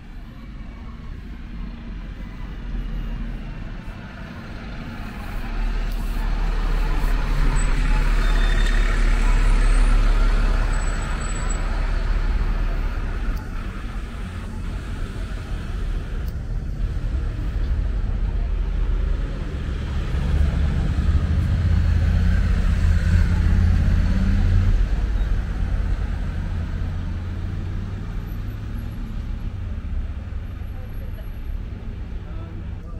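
Road traffic passing close by on a town street: a double-decker bus's engine swells and fades over several seconds in the first half, then another vehicle's engine passes about two-thirds of the way through.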